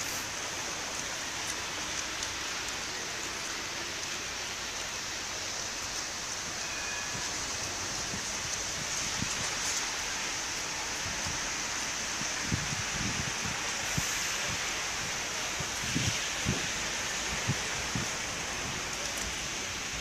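Steady hiss of outdoor ambience, with a few short low thuds in the second half.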